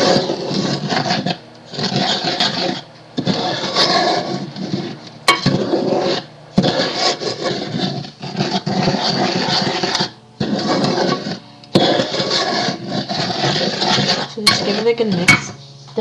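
A wooden spoon stirring and scraping dry flour and salt around the inside of a cooking pot, in long scraping passes with short breaks between them.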